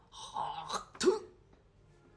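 A person briefly clearing their throat, ending a little over a second in.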